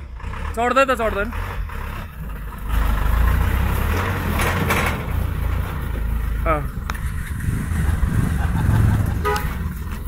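Diesel engine of an SML light truck labouring as it pulls away up a rough stony road, its rumble growing louder about three seconds in and holding.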